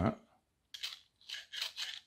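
Three short scraping rasps of hard 3D-printed plastic parts rubbing as the rubber-band launcher is handled.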